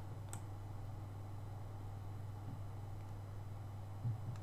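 A single sharp computer mouse click about a third of a second in, over a steady low hum.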